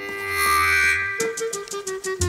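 Background instrumental music: a swell in the first second, then a held note with short notes played over it.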